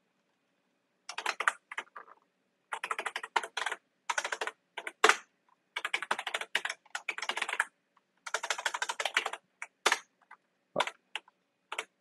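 Typing on a computer keyboard: quick runs of keystrokes broken by short pauses, with a few single, sharper key presses in between.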